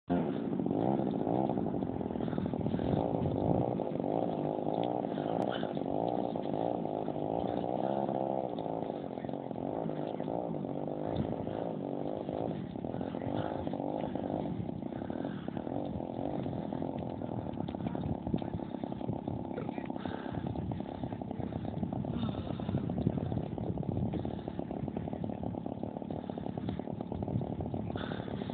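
Petrol engine of a large model aerobatic aeroplane running on the ground, mostly at a steady low throttle, with the pitch rising and falling briefly about eight seconds in.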